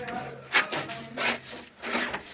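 Grey PVC drain pipe being twisted and pushed into a tee fitting: plastic scraping on plastic in three short strokes.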